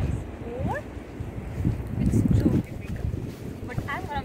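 Wind buffeting the microphone, a low rumble that swells strongest about halfway through. Over it, distant human voices: a brief rising cry near the start and another short vocal burst at the very end.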